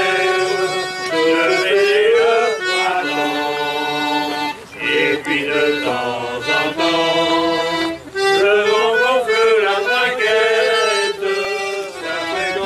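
Diatonic button accordion playing a traditional tune, with a group of people singing along from song sheets; the music breaks off briefly about five and eight seconds in.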